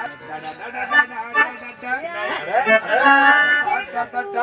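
A performer's voice over electronic keyboard accompaniment.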